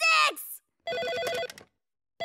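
A desk telephone rings once about a second in, an electronic trilling ring lasting under a second. It is preceded at the very start by a short, loud vocal cry that falls in pitch.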